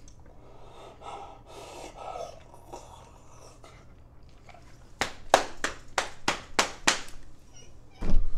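A quick run of about eight sharp hand claps or slaps, about four a second, for roughly two seconds, after some soft muffled breathing through hands held over the mouth.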